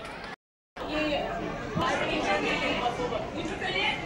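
Indistinct chatter of several voices in a large hall, after a brief dead gap about half a second in where the sound cuts out completely.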